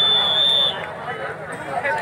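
A referee's whistle blown in one long steady blast that stops about two-thirds of a second in, over men's voices and crowd chatter around a kabaddi court.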